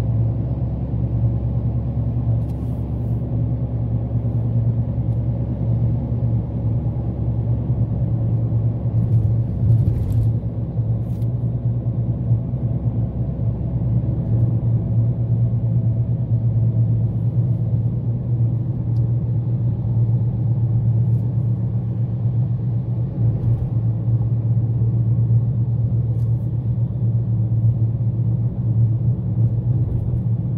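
Car driving on a city avenue, heard from inside the cabin: a steady low engine and road rumble.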